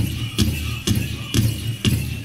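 Southern-style powwow drum song: the big drum struck by the drum group in a steady, driving beat of about two strikes a second, with singing and the jingle of dancers' bells over it.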